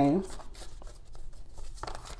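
A spoken word trails off near the start, followed by faint rustling and scattered soft clicks in a small room.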